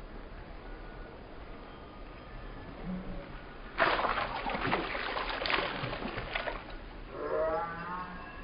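Sudden splash into a backyard swimming pool about four seconds in, with the water churning for a few seconds after it. A child's voice follows near the end.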